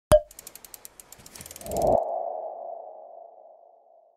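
Logo animation sound effect: a sharp hit, a quick run of ticks, a swelling whoosh about two seconds in, then a ringing tone that fades away.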